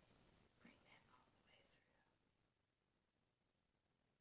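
Near silence: room tone, with a few faint, brief sounds in the first two seconds.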